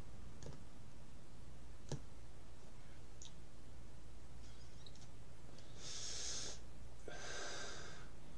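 A man breathing while smoking a cigarette: two short breathy rushes a second apart near the end, with a few faint clicks before them, over a low steady room hum.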